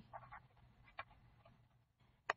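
Near silence, with faint squeaks of a felt-tip marker writing on paper and a light tick about a second in.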